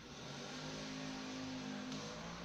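Small battery-powered electric motor of a toy Hiro locomotive whirring steadily.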